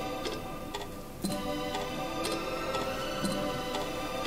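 Background music: sustained held notes over a clock-like ticking beat, about two ticks a second.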